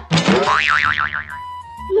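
Cartoon 'boing' sound effect: a springy tone wobbling rapidly up and down, followed by a thin steady tone after about a second and a half.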